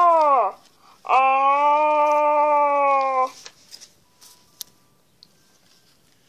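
A child's voice making drawn-out monster cries in play: a short rising-and-falling cry that ends about half a second in, then one long held cry of about two seconds, slowly sinking in pitch.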